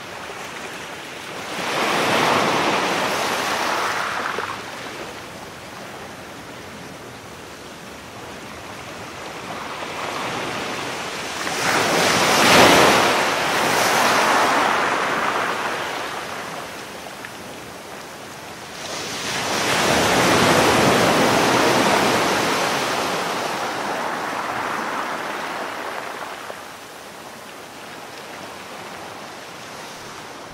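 Sea surf: waves swell and wash in three times, about two, twelve and twenty seconds in, each rolling up loudly and then slowly ebbing away.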